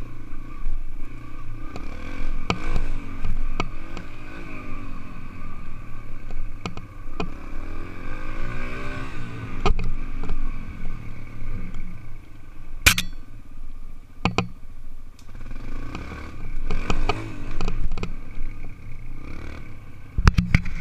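Dirt bike engine revving up and falling back several times while riding over rough ground, with rattles and clatter from the bike and a sharp knock about thirteen seconds in.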